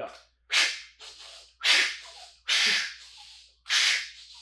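A man's sharp, forceful breaths, four in a row about a second apart, each starting suddenly and tailing off. This is rapid fractional recovery breathing through the nose, a deliberate hyperventilation to clear carbon dioxide after a hard effort.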